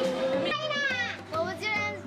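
Children's high-pitched excited voices, sliding up and down in pitch, over background music.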